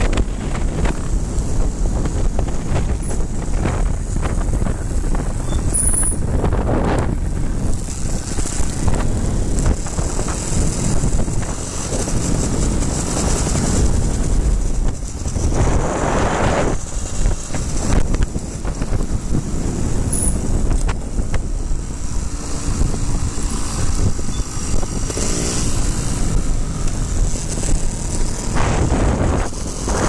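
Wind rushing over the microphone of a riding trials motorcycle, with the bike's engine running underneath, the rush swelling and easing as speed changes.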